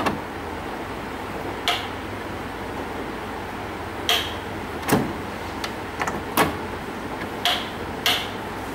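A lamp and its plug lead being handled and plugged into a socket on a benchtop trainer board: a handful of short, scattered clicks and knocks, one a little heavier about five seconds in, over a steady hiss.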